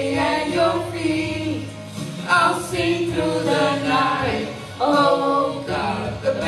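Church worship singing: a small group of voices singing a slow praise song over a steady instrumental backing, in phrases a couple of seconds long with brief breaks between them.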